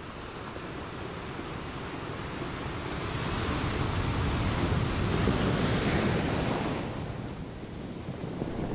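Sea surf: a wave rushing in, swelling over a few seconds to its loudest around the middle, then washing back and easing off near the end.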